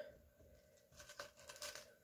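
Faint clicks and rustles of push pins being picked out of a small plastic tub, a short run of light taps from about a second in, otherwise near silence.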